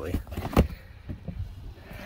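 A single sharp knock about half a second in, over a low rumble.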